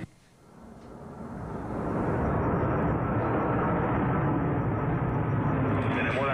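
Steady rushing noise of a muffled, narrow-band radio recording of airline pilots' communications, fading in over about two seconds after a brief near-silence.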